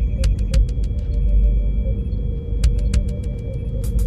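Electronic ambient music: a deep droning bass rumble under two steady high tones, broken by short runs of sharp clicking percussion.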